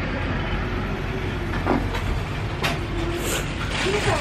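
Steady low rumble and hiss of outdoor background noise, with a couple of faint, brief voice-like sounds.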